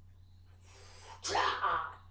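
A person's voice: a breathy rush of air starting a little over half a second in, turning into a short voiced outburst about a second in, over a low steady hum.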